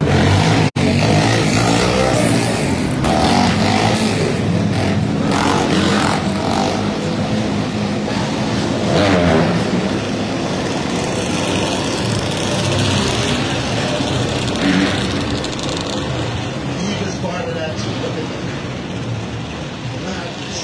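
Loud city street traffic: motor vehicle engines, including a motorcycle, running and revving, over indistinct voices.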